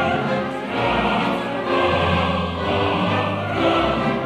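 Opera chorus singing with the orchestra in a live performance: many voices holding notes that change every second or so over sustained orchestral bass.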